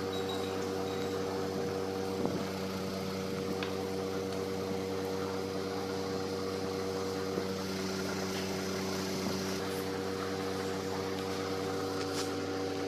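Steady machine hum, made up of several held tones that do not change, with a few faint ticks over it.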